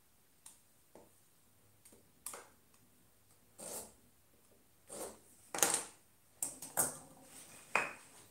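Marking knife scoring lines into a wooden workpiece against a square: a series of short, separate scrapes and light taps. Near the end, hand tools are set down on the wooden bench.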